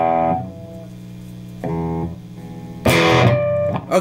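Gibson SG electric guitar, played left-handed: an E power chord ringing and dying away, then struck twice more, briefly and quietly, then louder with a scratchy pick attack about three seconds in.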